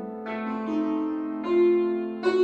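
Concert cimbalom played with hammers: a few struck notes that ring on over a sustained low note, the loudest stroke about one and a half seconds in.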